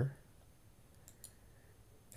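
A few faint computer mouse clicks about a second in, made while selecting cells and clicking the merge button in a spreadsheet, over quiet room tone.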